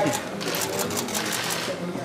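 Rapid, irregular clicking of press camera shutters firing in bursts, over background voices in a gym.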